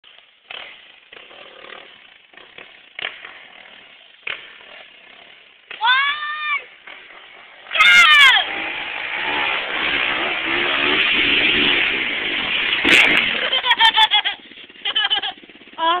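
Dirt bike engine running hard up a steep hillclimb: a loud, dense rasp builds about halfway through and holds for around five seconds. People whoop just before and as it starts.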